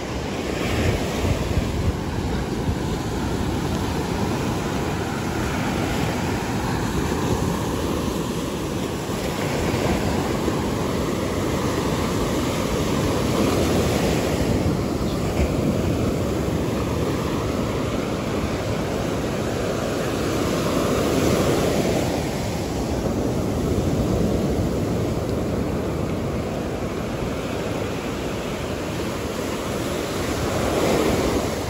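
Surf breaking and washing up a sandy beach: a steady rush of waves that swells and eases now and then.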